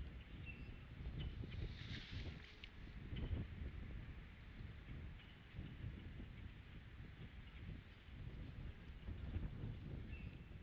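Outdoor nest-cam ambience: a low, uneven rumble of wind on the microphone, with faint scattered chirps of small birds.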